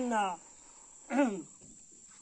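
A continuous high-pitched insect trill in the background, with a man's voice speaking briefly at the start and again about a second in.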